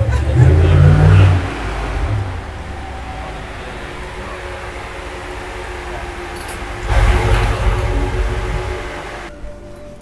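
A motor vehicle's engine rumbling, loud in the first second or so and again about seven seconds in, quieter in between.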